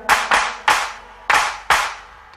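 Handclaps alone in a Bollywood song's backing track while the melody drops out: about five sharp claps in an uneven rhythm.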